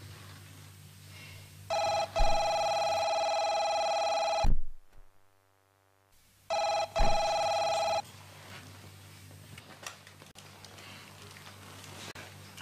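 Electronic desk telephone ringing: one ring of nearly three seconds, a pause, then a shorter ring of about a second and a half. Sharp clicks mark where the rings start and stop.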